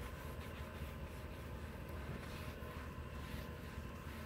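Faint, steady background noise with a low rumble and no distinct events.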